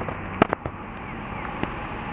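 Yamaha SR500's single-cylinder four-stroke engine idling through a short open exhaust pipe, with a steady low running sound. Sharp, irregular exhaust pops come over it: a quick cluster about half a second in and one more later.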